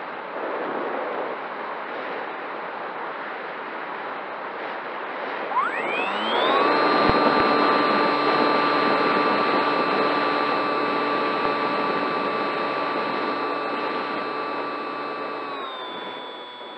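Electric motor and pusher propeller of a Bixler foam RC plane, heard from an onboard camera. Wind rushes over the microphone at first; about six seconds in, the motor spools up in a rising whine and then holds a steady high-throttle drone, dropping slightly in pitch near the end.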